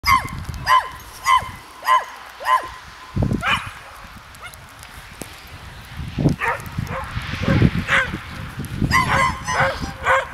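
A dog barking, a steady run of single barks a little over half a second apart, stopping after about three and a half seconds and starting again, faster, near the end.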